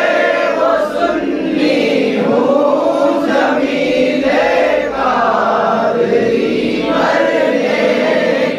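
A group of men chanting a devotional Islamic recitation together in unison. The phrases are held and run about one and a half to two seconds each, with short breaks between them.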